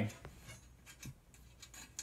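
Faint, scattered small metal clicks and rubbing as a screw and nut are fitted by hand into a corner bracket on aluminium extrusion rails, with a slightly sharper click near the end.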